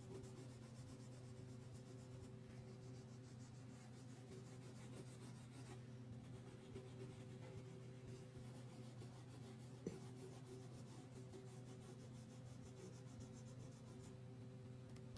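Faint scratching of a crayon stroked back and forth on paper while colouring in, with a single sharp click about ten seconds in.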